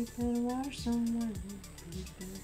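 Background electronic music: a steady kick-drum beat, about two a second, under a melody of long held notes.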